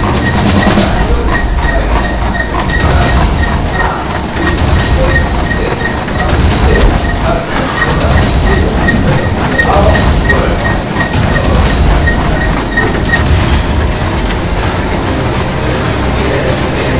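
Several treadmills running at a sprint, belts and motors rumbling under the rapid footfalls of the runners.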